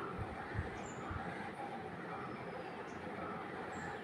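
Faint steady background noise with a few soft low thuds in the first second or so, as a metal spoon scoops thick peanut butter out of a steel mixer jar.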